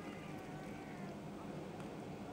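Faint dialogue from a TV episode playing at low volume, over a steady low hum.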